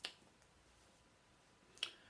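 Near silence in a small room, broken by two short, sharp clicks: one at the start and one shortly before the end. They are most likely mouth clicks, lip smacks as the speaker parts his lips between sentences.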